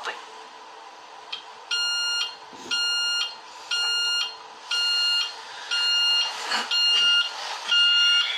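Electronic alarm clock beeping about once a second, each beep about half a second long, starting a couple of seconds in.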